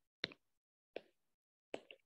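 A few faint, short clicks in near silence: one about a quarter second in, one about a second in, and two tiny ones near the end.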